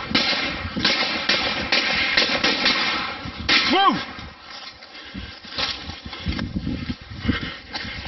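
People running through bush: quick footsteps, rustling vegetation and the handheld camera being jostled, a dense stretch that thins out after about three and a half seconds. A man gives one short shout about four seconds in.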